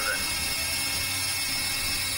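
Steady electronic synthesizer drone: an even noisy hiss over a low hum, holding without change once a spoken word ends at the very start.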